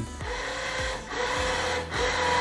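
Remote-controlled electric winch motor running steadily as it reels in the bungee cord, with a brief dip about halfway through.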